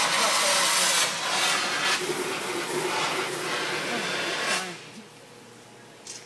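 Steam hissing hard from the steam line of a distillery's mash-cooking tank, cutting off sharply about four and a half seconds in. The line is being opened to blow out its water so that the steam goes into the tank to heat the mash.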